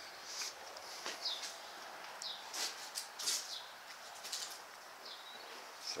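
Small birds chirping on and off in the background: short, high chirps and brief falling notes every second or so over a faint steady hiss.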